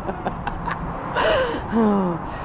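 A person's breathy, gasp-like vocal sound falling in pitch, a little over a second in, followed by a second short falling voiced sound near the end.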